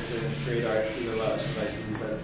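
Eraser rubbing chalk off a blackboard in quick back-and-forth strokes, about four a second.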